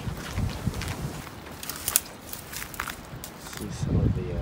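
Footsteps of a person walking in sandals: a run of irregular light steps and scuffs.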